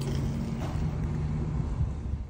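Steady low hum of an idling vehicle engine, heard from inside the car.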